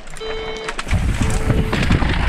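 Electronic race-start timing beeper counting down: two half-second beeps about a second apart. From about a second in, a mountain bike sets off down a dusty, rocky trail, its tyres rumbling over dirt and rock with wind rush.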